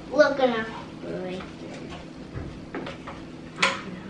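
A child's voice calls out briefly at the start. Then comes light clatter of kitchen utensils against a frying pan while stir-fry is stirred on the stove, with a few small clicks and one sharper click near the end.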